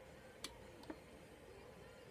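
Two light clicks about half a second apart, the first the louder, from small makeup items being handled, against near-silent room tone.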